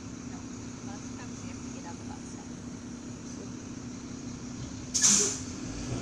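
Garbage truck's engine running steadily as a low hum, then about five seconds in a short, loud hiss of its air brakes.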